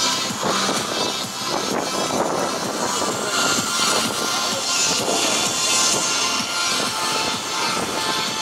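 Music playing over the steady rolling and clatter of many inline skates on an asphalt road.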